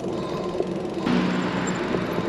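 Steady road and wind noise of a bicycle rolling along a paved street; the noise turns abruptly brighter and a little louder about a second in.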